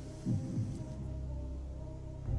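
Low steady humming drone of a tension music bed, with one deep throb about a quarter of a second in.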